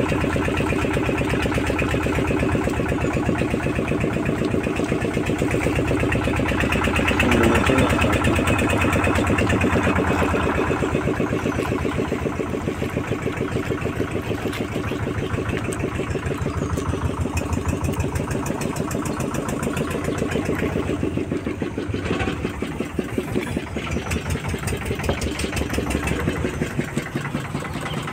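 Small engine of a wooden river boat running steadily under way, a rapid even pulse, a little quieter in the second half.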